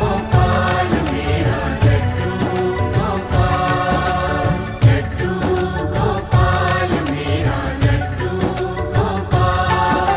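Hindi devotional bhajan music with a steady drum beat under melodic lines.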